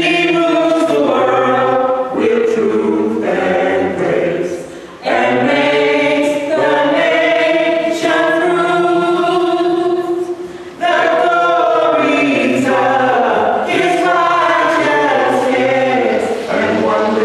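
A small vocal group singing together unaccompanied in long held notes, with short breaks between phrases about five and eleven seconds in.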